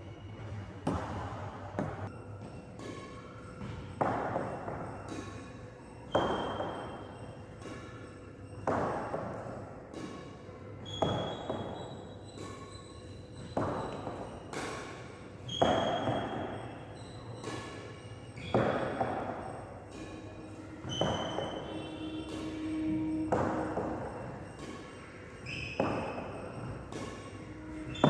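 Badminton racket striking shuttlecocks over and over, about one hit every two to three seconds during a cross-drop practice drill. Each hit echoes in the large indoor hall.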